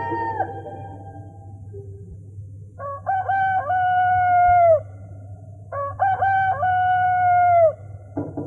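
A rooster crowing twice, each crow about two seconds long: a few short notes, then a long held note that drops away at the end. A sustained music chord dies away in the first half-second.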